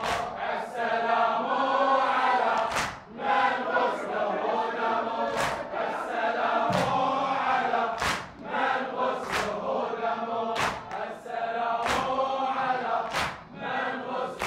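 A crowd of male mourners chanting a latmiya refrain in unison, with a sharp chest-beating slap (latm) in time about every 1.3 seconds.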